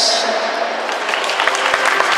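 Audience applauding, with many separate claps that grow denser about a second in.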